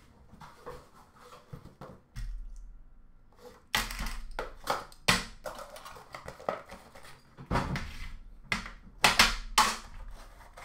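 Hands handling objects on a counter: quiet at first, then from about four seconds in a string of irregular sharp knocks and clacks, some loud.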